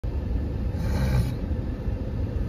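Car cabin noise while driving slowly over a snow-covered street: a steady low rumble of engine and tyres, with a brief hiss about a second in.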